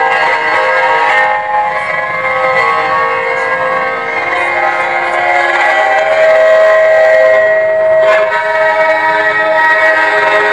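Sustained drone tones at several pitches held together like a chord, played through horn loudspeakers. A stronger, lower tone comes in about halfway.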